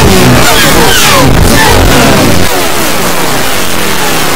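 Loud, heavily distorted edited audio: a harsh noisy wash with many short falling pitch sweeps one after another, dropping slightly in loudness about halfway through.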